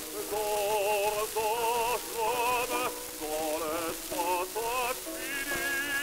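Operatic baritone singing with a wide vibrato on an acoustic disc recording from around 1905, several short notes and then a long held note beginning about five seconds in. A steady hiss and crackle of record surface noise lies under the voice.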